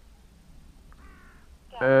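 A bird calling once, a short call about a second in, over a low background; a man's voice starts near the end.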